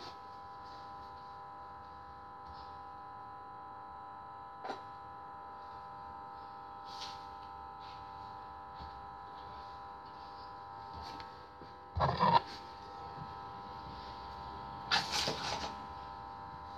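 Scissors cutting fabric by hand with faint, scattered snips over a steady electrical hum. There are two louder bursts of scissors and fabric handling, about 12 and 15 seconds in.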